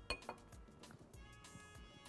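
A single light glass clink right at the start, with a brief ring, then a softer knock: glassware being picked up or set down on the counter. Faint background music plays under it.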